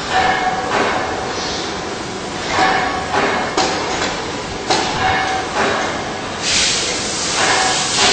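Grinding wheel of a carbide tool grinder sharpening the carbide teeth of a circular saw blade: a steady whine under repeated bursts of grinding hiss as the wheel meets tooth after tooth, loudest near the end.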